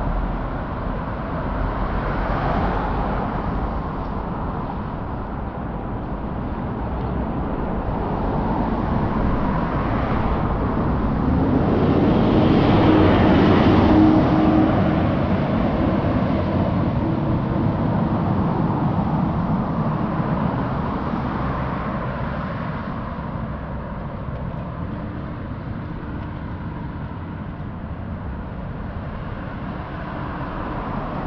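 Road traffic on a city street: a steady wash of passing cars, with one louder vehicle going by about halfway through, its engine hum and tyre noise rising and then fading.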